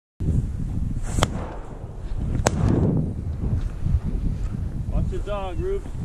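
Wind rumbling on the camera's microphone while the wearer moves through the reeds, with two sharp cracks about a second and a half apart. A brief voice-like call comes near the end.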